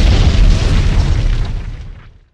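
Explosion sound effect: a loud boom with a deep rumble that fades away over about two seconds.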